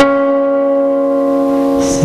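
Nylon-string classical guitar: a chord struck once and left ringing at an even level.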